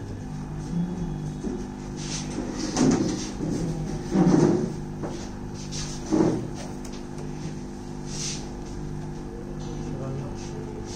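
Small AC induction motor running under TRIAC speed control, humming steadily. Three short knocks stand out above the hum, about three, four and six seconds in.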